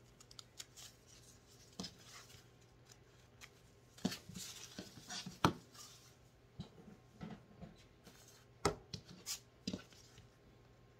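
Sewing scissors snipping excess fabric from around a stitched cloth pad: irregular snips and clicks, with a denser run about four seconds in. The scissors are then put down on the cutting mat, and a few sharp clicks and rustles follow near the end as the fabric pad is handled.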